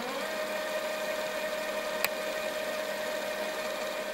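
Sustained electronic drone tone, one steady pitch with a buzzy edge, rising slightly as it starts and then held level, with a single faint click about two seconds in.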